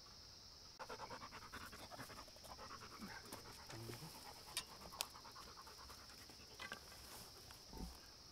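A Rottweiler panting quickly close by, a rapid run of breaths starting about a second in, then softer. Two sharp clicks come midway, over a steady high insect drone.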